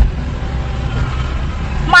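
Steady low rumble of engine and street-traffic noise, heard from inside a stopped car's cabin, with a short thump at the very start.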